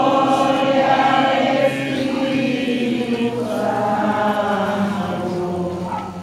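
A crowd of people singing a devotional hymn together in unison as they walk. The singing runs in two long phrases of held notes, with a short break a little past the middle.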